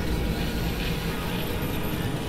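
Experimental electronic noise music from synthesizers: a dense, steady drone with a heavy low rumble under a wash of hiss, no beat or clear melody.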